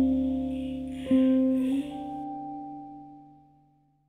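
Closing bars of an indie folk song: a guitar chord is struck about a second in and rings out, fading away to nothing by the end.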